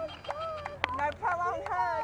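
A woman's high-pitched, wordless emotional cries: several long, wavering cries in a row, with one short click a little before the middle.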